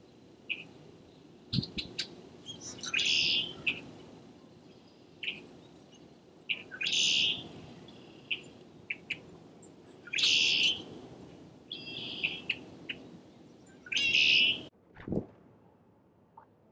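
Wild birds calling: one loud call repeated four times, about every three and a half seconds, with shorter chirps in between. A low thump comes near the end.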